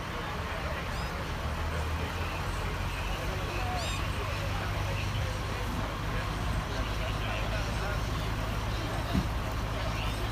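Steady low hum of vehicle engines running at idle and passing traffic, with indistinct voices of people talking nearby.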